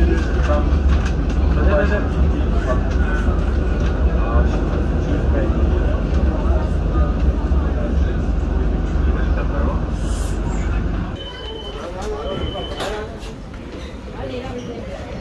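Interior of a moving tram car: a steady low running rumble with passengers' chatter over it. About eleven seconds in the rumble drops away and two short high beeps sound.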